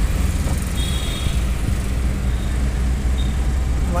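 Steady engine drone and road noise of a goods vehicle, heard from inside its cab while driving in traffic, with a faint, brief high-pitched tone about a second in.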